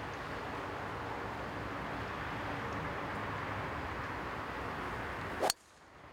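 Steady outdoor background noise, then a single sharp crack of a golf club striking the ball off the tee near the end. The background noise cuts off abruptly right after the strike.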